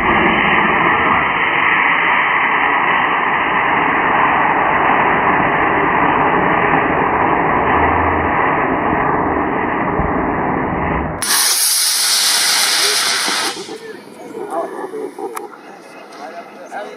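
Estes C6-3 black-powder model rocket motor firing: a long, loud, steady rushing hiss that sounds low and muffled, as if played slowed down with slow-motion footage. It cuts off sharply about eleven seconds in, and a brighter hiss follows for about two seconds.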